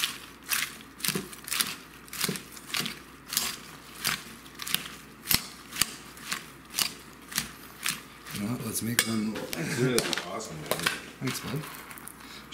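Metal salad tongs tossing dressed lettuce in a ceramic bowl: a steady rhythm of clacks and rustling leaves about twice a second, stopping about two-thirds of the way through.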